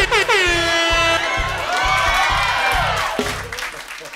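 Short music sting from a band, opening with a loud horn note that slides down and then holds, over a steady beat of about four strokes a second; it stops a little after three seconds in.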